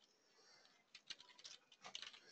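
Faint computer keyboard typing: a few scattered keystrokes against near silence.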